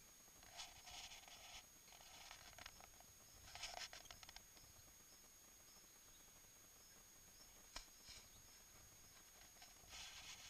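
Near silence, with faint rustling from a handheld camera being moved, twice in the first half, and a single soft click near the end.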